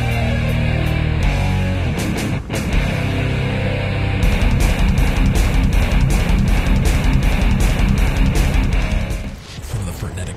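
Loud heavy rock music with guitar, getting busier and louder about four seconds in, then dropping away shortly before the end.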